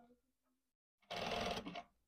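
Sewing machine running in one short burst of less than a second, about a second in, stitching fabric.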